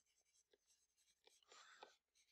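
Near silence, with a few faint taps and soft scratches from a stylus writing on a screen.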